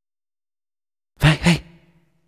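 A person's voice making two quick, breathy vocal sounds, like a gasp or sigh, a little over a second in, each with a clear pitch.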